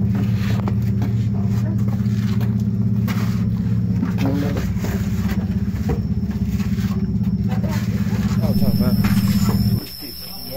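A loud, steady low machine-like hum with faint voices over it, cutting off abruptly near the end.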